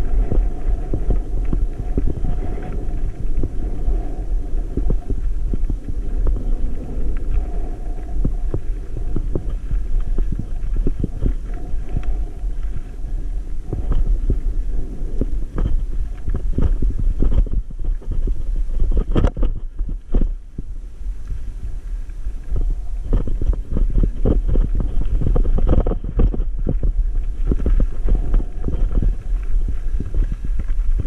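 Mountain e-bike riding over rough dirt and cracked slickrock: a steady low wind rumble on the microphone with frequent knocks and rattles from the tyres and bike jolting over the rock. It goes briefly quieter about twenty seconds in.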